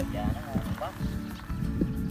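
Speech: a man says 'dạ' and a short phrase follows, over steady background music and a low, irregular rumbling noise.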